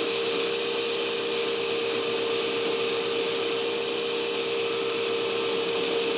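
Belt grinder running with a steady hum while the square steel shank of a hardy tool is pressed against its abrasive belt, making a continuous grinding hiss. The oversized shank is being ground down to fit the anvil's hardy hole.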